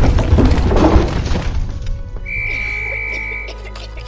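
Earthquake sound effects in an animated film: heavy rumbling with crashing and shattering debris that dies away about two seconds in, leaving a low hum and a brief steady high tone over music.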